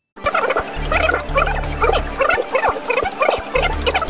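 Large outdoor fan running loudly, with a warbling squeal that repeats about three times a second and bouts of low rumble from its airflow.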